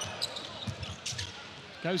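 A basketball bouncing a few times on a hardwood court over steady arena crowd noise.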